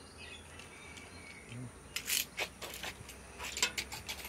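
Faint bird chirps in the first half, then a quick run of short rustles and clicks from handling a coaxial cable and the phone.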